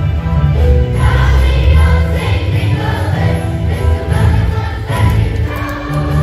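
Children's choir singing a song together over an instrumental accompaniment with a strong, steady bass line.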